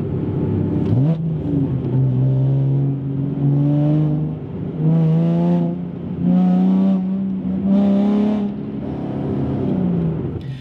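Nissan 370Z's 3.7-litre V6 engine and exhaust revved in a series of throttle applications, loading and unloading the drivetrain. The pitch jumps up about a second in, then climbs in steps with short dips between, and drops back near the end.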